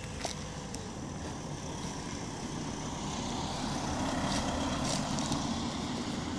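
A motor vehicle passing on the road: tyre and engine noise swells to its loudest about four to five seconds in, then eases off. A few sharp clicks sound over it.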